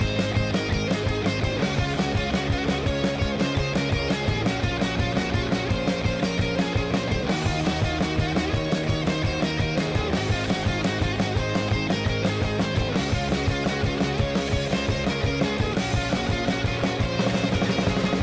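Recorded rock song playing: electric guitar and bass over a steady, driving drum-kit beat, getting a little louder near the end.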